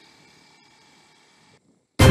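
Faint, steady background hiss with no distinct event, cutting to dead silence shortly before the end.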